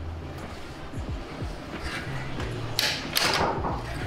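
An Ikeya Formula seamless transmission in a cutaway display is shifted by hand from fourth to fifth: metal shift parts slide and click, with one louder clack about three seconds in.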